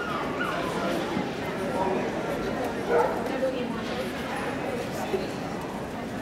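A dog barking and yipping, loudest once about three seconds in, over the steady chatter of people.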